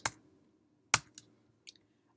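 A sharp click about a second in, then two faint clicks: computer keys being pressed while editing code.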